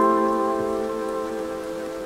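Background piano music: one held chord ringing and slowly fading away.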